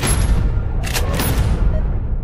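Trailer sound design: a heavy boom hits at the start and leaves a deep rumble that carries on. About a second in comes a second sharp hit, all over the trailer's music.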